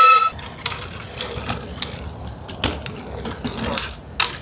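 A held tone stops just after the start, then a BMX bike's tyres rolling over rough asphalt with a low rumble and scattered clicks and knocks.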